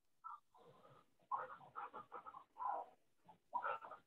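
Faint, short animal calls in quick irregular succession, coming through a call participant's microphone with the top end cut off.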